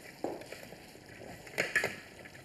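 Light kitchen handling noises: a sharp knock about a quarter second in and a few short clatters near the end, as utensils and dishes are handled.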